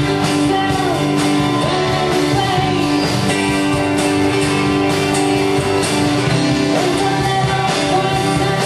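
Live rock band playing a song: electric guitar and drums, with a singer.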